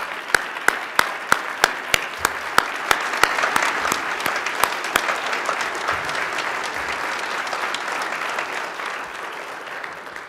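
A large audience applauding. One clapper's sharp, evenly spaced claps stand out at about three a second for the first few seconds, over the general applause, which thins a little toward the end.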